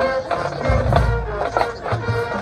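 Marching band playing: brass chords held over regular drum hits.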